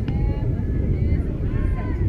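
Wind rumbling on the microphone at a softball field, with players and spectators calling out in the distance. A single sharp knock right at the start.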